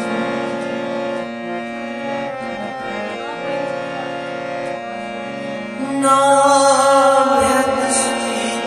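Harmonium playing held chords under a man singing a Kashmiri Sufi kalam; the voice and playing grow louder from about six seconds in.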